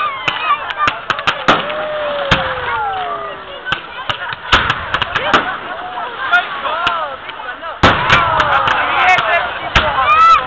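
Firework display: rockets bursting with many sharp bangs and crackles, mixed with long falling and arching whistles. The bangs come thickest near the end.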